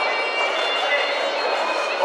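Music led by a reedy, bagpipe-like wind instrument holding long high notes, over the chatter of a crowd in a large hall.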